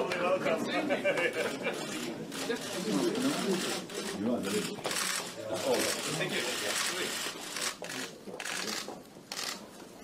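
Indistinct voices of several people talking close by, with frequent short clicks and rustles; the voices fade in the second half while the clicks and rustles continue.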